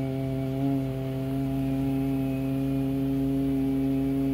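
A steady low buzzing tone with a rich stack of overtones, held without a break while the three-transistor CB amplifier is keyed into a wattmeter and dummy load.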